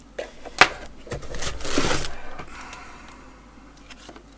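Plastic-wrapped ring light and its cable being pulled out of a cardboard box: a sharp knock about half a second in, then a rustle of plastic and cardboard lasting about a second and a half.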